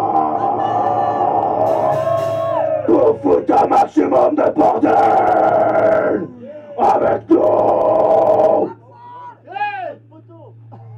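Loud shouting and yelling over distorted amplified sound. It comes in several blocks and cuts off abruptly near the end, leaving a few short wavering squeals.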